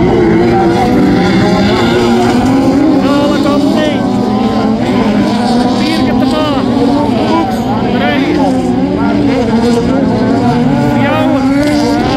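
Engines of several VW Beetle-based autocross cars running on a dirt track, their revs rising and falling over one another.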